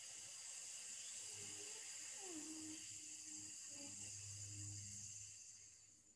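A forceful nasal exhale through a partly closed left nostril, a steady airy hiss lasting about six seconds that fades away near the end. It is the exhale phase of alternate-nostril breathing, pushed out with strength through the narrowed nostril.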